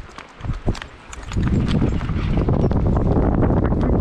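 Mountain bike rolling down a loose stony trail: tyres crunching over rock with rapid clicks and rattles. It is quieter at first, then grows loud and rough about a second in as the bike picks up speed.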